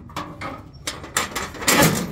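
Scraping and rattling of a Ford 4100 tractor's sheet-metal bonnet as it is handled, with short scrapes early on and a louder, harsher scrape near the end.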